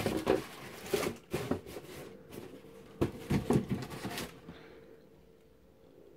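Cardboard boxes being handled: a string of light knocks, taps and rustles that stops about four seconds in.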